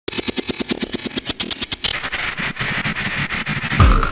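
Electronic music intro: a fast stuttering run of clicks for about two seconds, then a noisy rising swell, and an electronic dance beat with a heavy kick drum, about two beats a second, starting just before the end.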